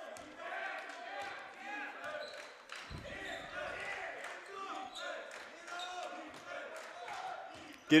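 Basketball being dribbled on a hardwood gym floor, a run of bounces, heard against faint voices in the gym.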